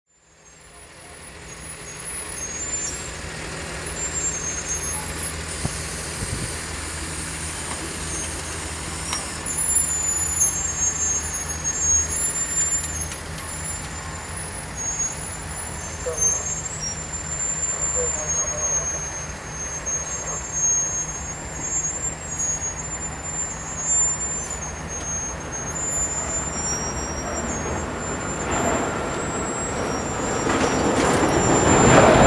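Diesel engine of a hi-rail rail inspection truck running steadily as the truck rolls slowly along the track, a low even hum that fades in at the start and grows louder near the end. Thin high-pitched chirps come and go above it throughout.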